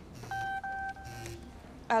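Mobile phone message alert: two electronic beeps, a short one and then a longer one, with the phone buzzing on vibrate under them.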